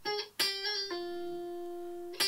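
Clean electric guitar playing single notes: a picked note about half a second in, then a quick hammer-on and pull-off slur, settling on one note that rings out for the last second.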